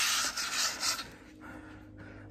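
Scratchy rubbing handling noise as the phone brushes against a hat brim close to its microphone, for about the first second, then dying down to faint background.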